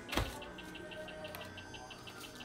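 A steady, rapid series of short high chirps, about six a second, from a small animal. There is one sharp knock just after the start.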